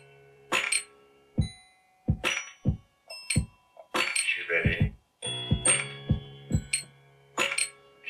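Drum and vocal one-shot samples triggered by hand from the pads of a Livid Block MIDI controller in Ableton Live. Separate kick, snare and hi-hat hits fall in an uneven pattern, and a short chopped vocal sample comes about halfway through.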